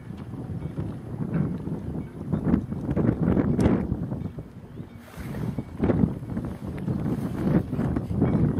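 Wind buffeting the microphone in gusts: a low, uneven rush that swells and falls every second or two, with a few brief sharper pops.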